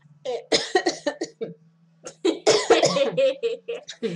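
A woman laughing in two bursts, about a second and a half each, over a steady low hum.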